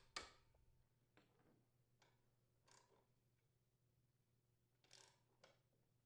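Near silence with a few very faint taps, about a second apart, then two more near the end: a hammer striking a 5/8-inch socket on a lawn mower blade's mounting bolt to loosen it.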